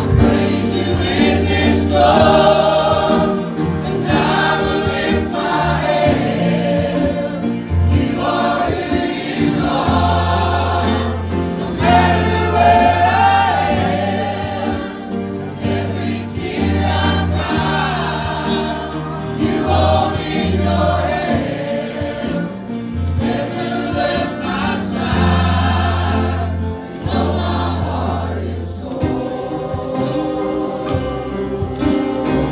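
Live gospel song sung by a man and a woman with band accompaniment, sustained bass notes underneath the voices.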